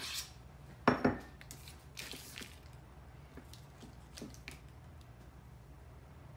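A ceramic dish sets down on the countertop with a sharp clink about a second in. A short crinkle of the foil cream-cheese wrapper being peeled follows, then a few faint taps.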